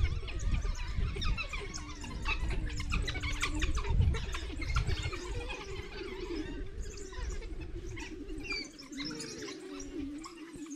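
African wild dogs twittering to each other: many short, high, bird-like chirps in quick succession as the pack wakes and gets active. A low wavering hum and rumble run underneath, heavier in the first half.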